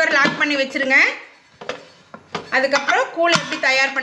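Aluminium pressure cooker lid being fitted and locked onto the pot, giving a few sharp metallic clinks. A woman talks before and after them.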